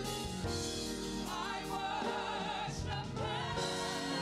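A gospel praise team of several voices singing together, sustained wavering notes over steady low instrumental accompaniment.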